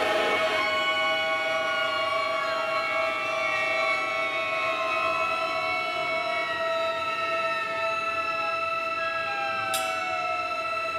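Sustained bowed string chords from violin, viola and cello, holding high notes with several slow downward slides in pitch. A brief sharp click sounds near the end.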